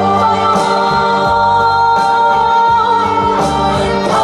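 A female trot singer sings live into a microphone over instrumental accompaniment, holding one long note for most of the first three seconds.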